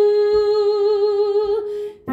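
A soprano voice holding one long sung note with a slight waver, on a hummed or open vowel without words, tapering off just before the end.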